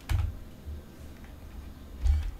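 Computer clicking: one sharp click at the start, then a couple of faint low bumps over quiet room noise.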